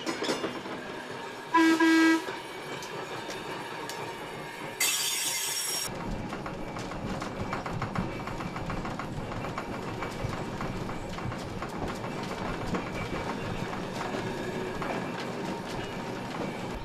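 Vintage electric streetcar on the move: a short, loud pitched toot about a second and a half in, a brief hiss a few seconds later, then the steady rumble and clickety-clack of its wheels on the rails, heard from aboard the car.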